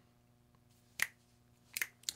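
Quiet room tone broken by a single sharp click about a second in and two more quick clicks close together near the end.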